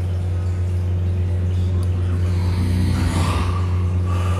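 A steady low electrical hum that starts and stops abruptly, with a brief swish about three seconds in.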